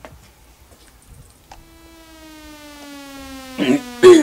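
A single sustained electronic tone, rich in overtones, comes in about a second and a half in and slowly slides down in pitch as it grows louder. A short shout breaks in near the end.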